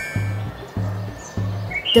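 Background music with a low bass note repeating about every 0.6 s. A warbling, whistle-like high tone fades out just after the start.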